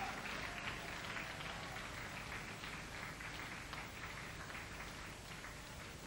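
Audience applause after a song ends, thinning out and slowly fading.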